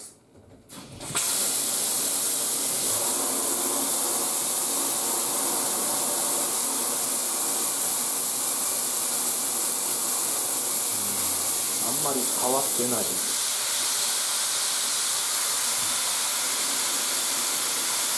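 Mirable shower head fitted with a Tornado Stick cartridge spraying at full tap flow into a bathtub: a steady hiss of water that starts about a second in. About two-thirds of the way through the hiss changes in tone as a hand is put into the spray.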